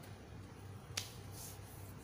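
A single sharp click about a second in, over a low steady hum in a quiet room.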